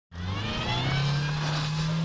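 Fiat Brava 16v's 16-valve four-cylinder petrol engine revving up over the first second, then held steady at high revs while the car slides through snow under power.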